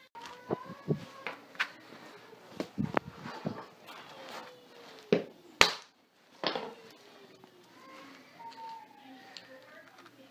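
Black walnuts in the shell being struck through a towel on a concrete floor: a string of irregular knocks and cracks as the hard shells break, the sharpest one a little past halfway. The blows are hard enough to smash the nuts to bits.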